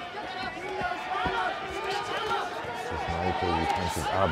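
Men's voices talking and laughing over arena ambience, with a single dull thud about a second in.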